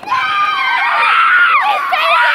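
Children's high-pitched voices shrieking and screaming together in play, loud and overlapping, starting just after a brief lull.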